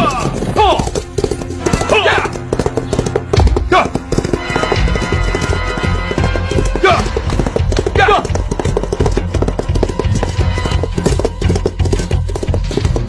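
Hoofbeats of a group of horses galloping, with horses neighing several times, over background music.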